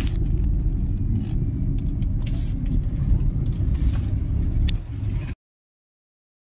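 Steady low rumble of a car's engine and road noise heard from inside the cabin while driving, with a few brief knocks. It cuts off suddenly a little after five seconds.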